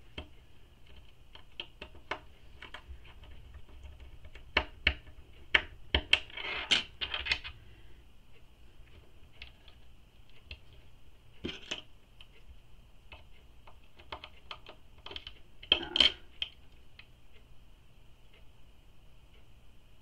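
Small metal strap-end hardware being fitted onto a fabric strap by hand: scattered light clicks and taps, with a few louder clicks about five to seven seconds in and again near sixteen seconds. A faint steady high-pitched hum runs underneath.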